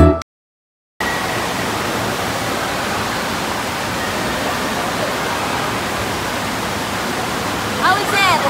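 Steady rush of churning water from a water park's current channel, starting abruptly about a second in after a brief silence; a high voice calls out near the end.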